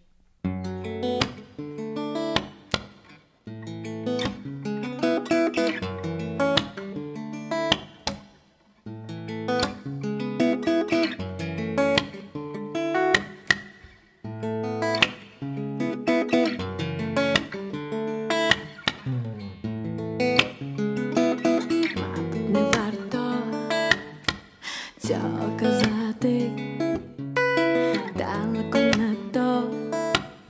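A live band plays the instrumental opening of a pop song: a strummed acoustic guitar over a repeating bass line, in a steady, even rhythm.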